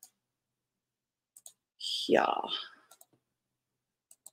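Two quick pairs of faint computer mouse clicks, about a second and a half apart, with near silence around them.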